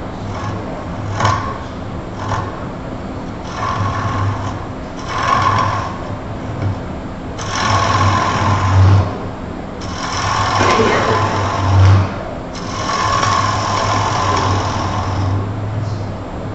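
Wood lathe running with a steady motor hum while a gouge cuts the spinning wooden vase blank. The cutting comes in about five passes of one to three seconds each, the longer ones in the second half.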